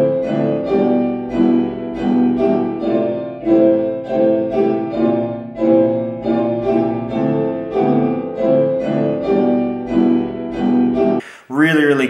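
Background piano music with a steady run of notes, cutting off suddenly about a second before the end.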